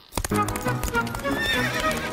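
Cartoon sound effect of a horse galloping in harness, its hooves clattering in quick beats, over background music.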